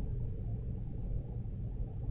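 Steady low rumble of background noise, with nothing else standing out.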